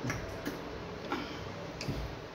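Close-miked eating sounds from people eating soup and fufu with their hands: about four short, sharp, wet clicks in two seconds.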